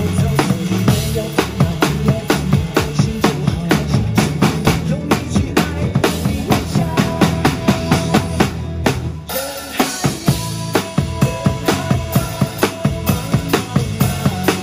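Acoustic drum kit played live to a pop backing track: steady kick, snare and cymbal strikes, with a short break a little past halfway before the beat comes back in.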